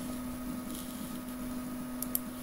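Desktop workstation running: a steady machine hum with a constant low tone.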